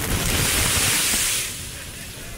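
Ocean wave breaking over shoreline rocks: a sudden loud hissing rush of surf and spray that fades after about a second and a half.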